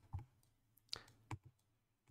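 About four faint, sharp computer mouse clicks, spread over the two seconds, against near silence.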